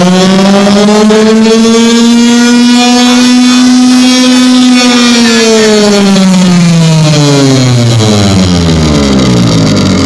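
A loud, buzzy electronic tone played through a DJ's loudspeaker stack, climbing slowly in pitch over the first few seconds, holding, then gliding back down by the end.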